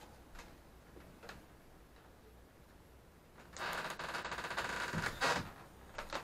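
Quiet for the first few seconds, then about a second and a half of scratchy scraping with a fine rattling texture, ending in a short louder scrape: the pencil of a homemade wooden compass dragging across paper.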